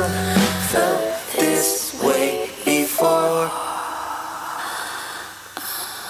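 Vinyl record of a soul song playing on a turntable. The bass drops out near the start, leaving four short chords about a second apart, then a softer fading wash that grows quieter toward the end.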